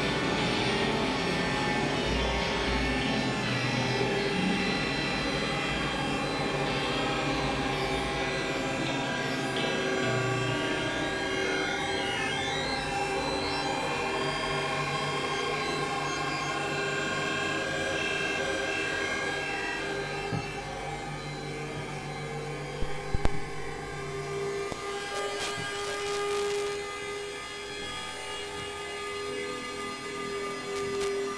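Experimental ambient synthesizer music: layered sustained drone tones over a low bass drone. About three-quarters of the way through, a brief cluster of sharp loud clicks, after which the low drone drops away and thinner high tones carry on.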